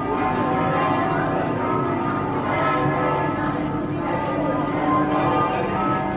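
Bells ringing, several tones overlapping and sounding together throughout.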